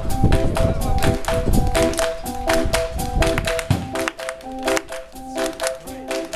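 Live band playing an upbeat song: a keyboard repeats a short pattern of quick notes over sharp, evenly spaced taps. About four seconds in the bass and drums drop out, leaving the keyboard line and the taps.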